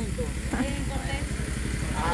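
A low, steady engine rumble with a fast, even pulse, like a motor idling, under faint voices.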